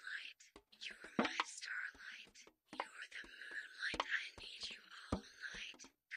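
A voice whispering song lyrics close to the microphone in an ASMR reading, in breathy phrases with short pauses and sharp clicks between the words.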